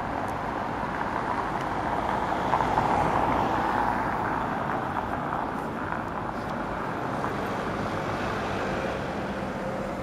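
Steady city street traffic noise, with a vehicle passing and growing louder about two to four seconds in.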